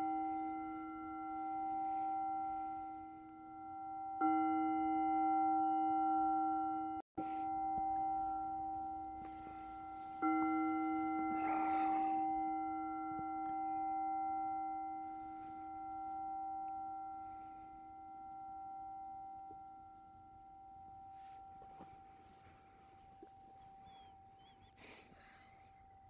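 Meditation singing bowl ringing, struck again about four seconds in and about ten seconds in; each ring wavers and fades slowly. It is rung to close the zazen sitting.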